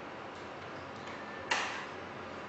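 A ceramic coffee cup set down on the drip tray of a bean-to-cup coffee machine, one sharp clink about one and a half seconds in, over a steady hiss.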